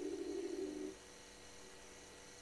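Remote-controlled camera's pan-and-zoom motor humming steadily, then stopping abruptly about a second in.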